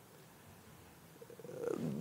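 Near silence in a pause between a man's spoken sentences, with faint room tone; in the last half second a breath and the faint start of his voice come in.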